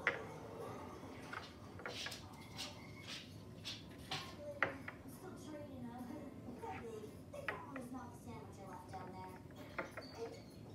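Domino tiles being set down on end on a wooden tabletop one at a time: short, sharp clicks and taps at irregular intervals, about ten in all.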